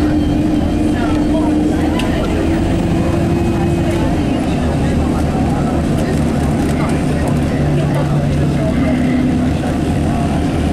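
Bus engine and cabin noise heard from inside a moving bus: a steady low drone. An engine hum holds for the first few seconds, then drops away, and a lower tone rises briefly near the end.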